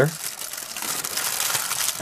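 Tin foil crinkling steadily as it is folded up by hand around a soft, waxy lump.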